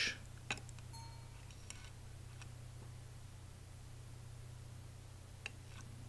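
Steady low hum with a few faint ticks, about half a second in and again near the end, from a whip finish tool and thread being worked at the head of the fly.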